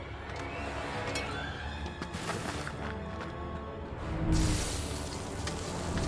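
Film score music under a lightsaber fight's sound effects, with a loud burst of noise about four seconds in.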